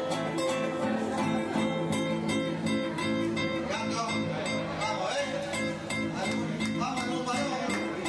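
Live Argentine folk band playing a gato: acoustic guitars strumming in a steady rhythm over electric bass and a bombo legüero drum.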